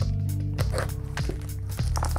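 Background music with steady held low notes and a few light ticks.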